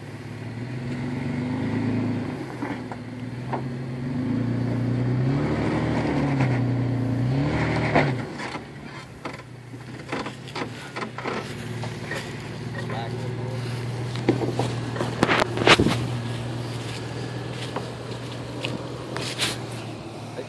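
Toyota FJ Cruiser's V6 engine revving up and down under load as it climbs a rocky trail, then dropping to a low, steady idle about eight seconds in. Scattered sharp knocks come over the idle, the loudest about three quarters of the way through.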